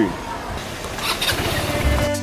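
Motor scooter engine running, heard as a low, even rumble under noise.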